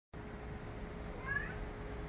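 Domestic cat meowing once, a short rising call a little over a second in, asking its owner for water.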